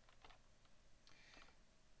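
Faint computer-keyboard typing: a handful of soft keystrokes scattered through the moment as a line of shell command is edited and entered.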